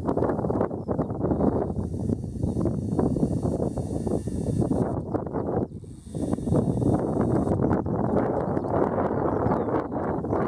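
Wind buffeting a camera's built-in microphone: a loud, gusty, crackling rumble that drops away briefly about six seconds in.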